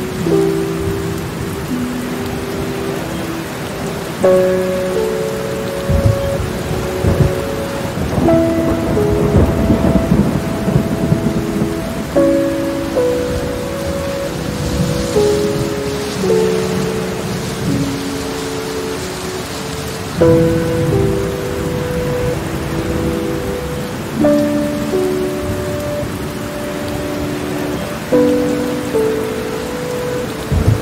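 Steady rain with several low rumbles of thunder, mixed with slow, soft instrumental music of held notes that change every second or two.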